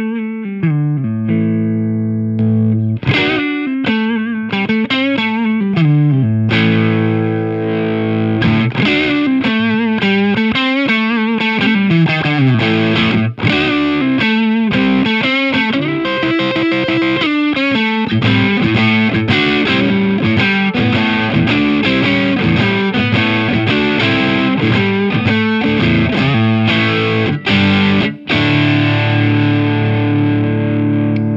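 Electric guitar playing chords and single-note lines with a little overdrive, through a Way Huge Saucy Box overdrive pedal into an amp set clean. It plays on throughout, with only brief pauses.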